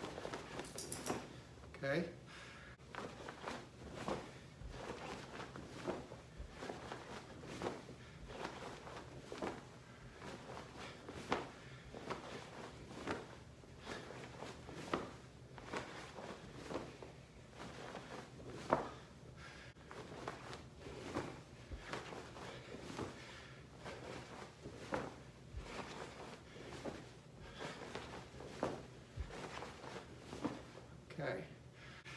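Quick, irregular swishes and thumps, about one or two a second, from a martial-arts uniform and the feet as punches, blocks and kicks are thrown.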